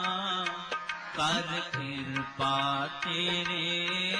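Gurbani kirtan, Sikh devotional hymn singing with accompaniment, sung in long held phrases.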